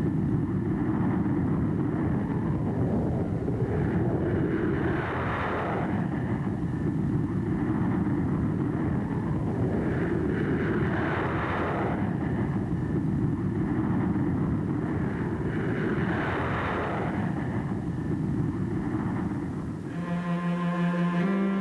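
Jet aircraft engines running with a steady deep rumble, and a rushing sound higher up that swells and fades three times, about every five to six seconds.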